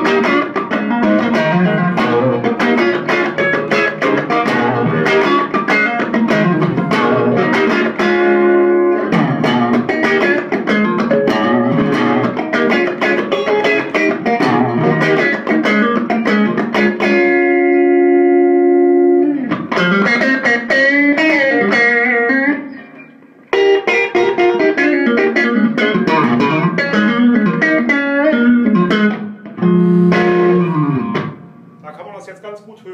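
Electric guitar, a Nick Page thinline Telecaster with Kloppmann pickups, played through an Electro-Harmonix Soul Food overdrive into an ATT Little Willie 15/8 all-tube combo: lightly driven blues-style picking and chords, with a chord held ringing for about two seconds past the middle and a brief break a little later. The overdrive, with drive at about one o'clock, gives the amp added midrange and a punchy, cutting tone.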